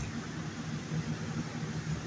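Steady low hum and hiss of background room noise.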